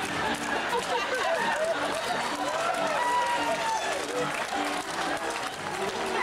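Live theatre audience applauding and reacting, with music playing underneath and voices rising and falling throughout.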